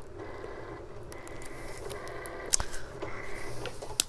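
Heat-transfer vinyl being weeded with a hook tool, soft peeling and scraping with a sharp tick about two and a half seconds in, over the steady whir of a Cricut cutting machine running.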